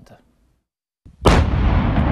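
An explosion: a sudden loud blast about a second in, followed by a continuing deep rumble.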